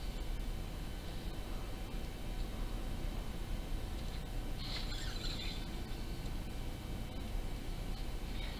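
Quiet handling of a banjo string being threaded into a wooden friction peg, with one soft scrape about five seconds in, over a steady low room hum.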